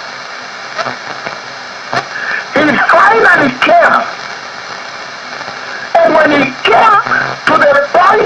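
A man preaching, heard as a radio broadcast: two stretches of speech, starting about two and a half and six seconds in, with a steady hiss and low hum in the pauses.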